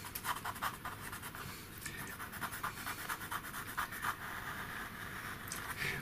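White pastel pencil scratching on pastel paper in short, repeated strokes, several a second, as white is laid into a drawing.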